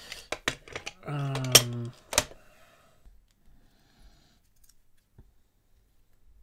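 Sharp clicks and knocks of a small black effects-pedal enclosure being handled and set down on a wooden workbench, loudest about two seconds in. Then only a few faint handling ticks.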